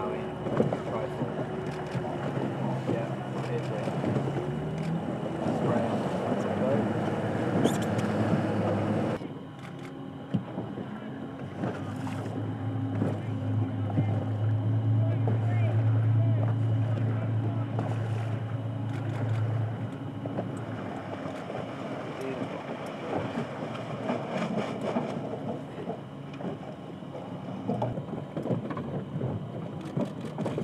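Motorboat engine running under the rush of wind and water as boats speed over choppy sea, with a low hum that swells in the middle. The sound changes abruptly about nine seconds in.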